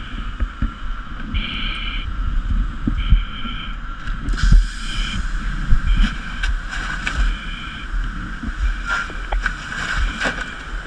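Fire venting out of a doorway in a low, uneven rumble, with wind and handling noise on a helmet-mounted microphone and scattered knocks. Short high beeps sound on and off about five times.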